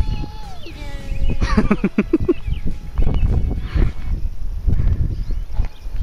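Wind buffeting the camera microphone, a continuous low rumble, with a few brief high-pitched gliding sounds in the first two seconds or so.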